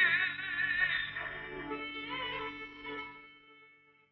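Turkish art music: a sung note held with a wide vibrato over accompaniment, which thins and fades out about three seconds in, leaving near silence at the end.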